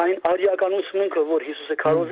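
Speech only: a person talking steadily.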